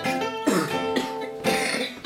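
Gypsy jazz acoustic guitar of the Selmer-Maccaferri type, with a small oval soundhole, playing a picked melody in the manouche style. Sharp, bright note attacks come about half a second in and again about a second and a half in.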